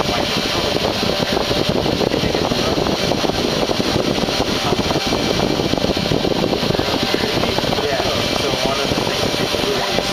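CNC router milling a copper-clad circuit board with a 0.38 mm three-flute tapered stub end mill. The spindle runs steadily and loudly as the cutter is fed along the traces at 46 inches per minute.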